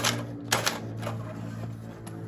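Cordless drill turning over a vintage David Bradley walking tractor's single-cylinder air-cooled engine by its flywheel nut: a steady hum with sharp clicks at the start and about half a second in, as the engine is cranked to try to start it.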